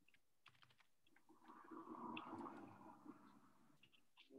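Near silence with faint, scattered clicks of computer keys coming through a video-call microphone, and a faint patch of low sound lasting about a second and a half in the middle.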